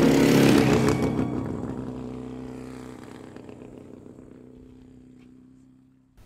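Trailer soundtrack ending on a held chord, with a short crash of noise at its start, fading out steadily over about six seconds to near silence.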